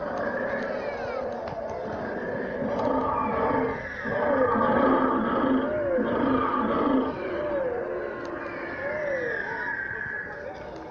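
Recorded roaring of an animatronic Tyrannosaurus rex model played over its loudspeaker, loudest from about four to seven seconds in.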